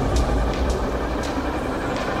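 Engine of a camouflaged BMW X5 prototype SUV running with a low, steady drone.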